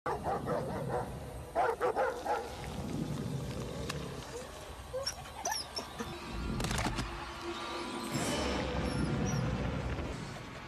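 A dog barking, a few short barks in the first two seconds, over background music.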